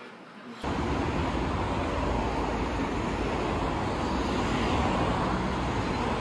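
Road traffic on a busy multi-lane city street: a steady wash of passing cars that starts suddenly about half a second in.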